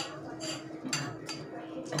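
Metal spoon stirring wetted oat bran in a drinking glass, giving a few light clinks against the glass about every half second.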